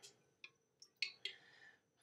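Metal spoon clicking lightly against the rims of jars while spoonfuls of cultured coconut kefir are transferred as a starter into fresh coconut water: a few faint clicks, the loudest about a second in, with some soft scraping.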